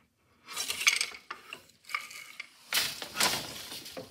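Wooden floor loom being worked. The shuttle passes through the shed with a clatter about half a second in, and the beater swings forward to pack the weft with a louder clatter about three seconds in. The loom's wooden frame and wire heddles rattle with each.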